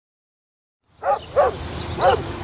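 Dog barking twice in quick succession, starting about a second in, over a steady background hiss.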